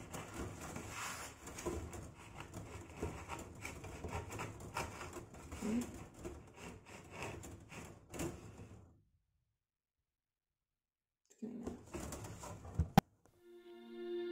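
Steel wire scraping and ticking as it is worked slowly through the hollow core of a foam pool noodle, with the foam rustling against it. The sound cuts out suddenly about nine seconds in, returns briefly with a sharp click, and music starts at the very end.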